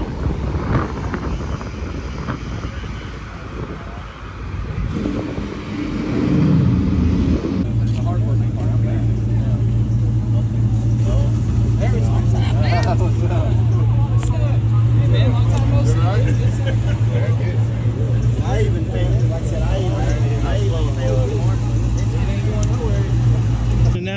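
A car engine moving off, then from about eight seconds a steady low engine hum held at one speed, with people talking over it.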